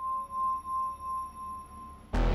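A single steady high pure tone, part of the soundtrack, swelling and fading about twice a second.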